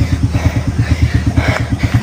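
A small engine idling steadily, a fast, even low thudding of about ten beats a second.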